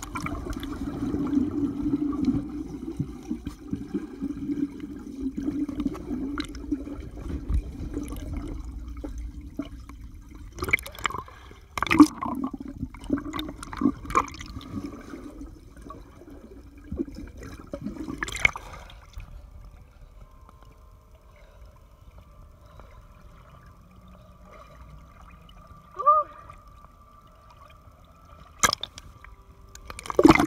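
Muffled underwater sound of a swimming pool heard through a submerged camera: churning water and bubbles at first, then a run of sharp knocks in the middle. After that it goes quieter, with a faint steady tone and a couple of short blips, until the camera breaks the surface at the end.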